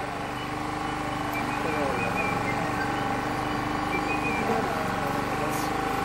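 A steady machine-like hum made of several held tones, with faint voices talking over it.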